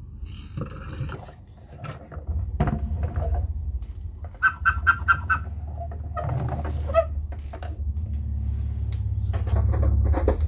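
Battery-powered plastic toy vehicle running: its motor and gears make a steady low, rattling whir that starts about two seconds in. Around the middle, a sound chip adds a quick run of electronic chirps.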